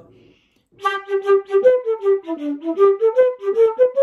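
Irish flute playing a quick string of short, separated notes on one continuous stream of air, each note parted by a glottal stop ('ha') rather than tonguing. The run dips lower in the middle and ends on a higher held note. It starts about a second in, after a short laugh.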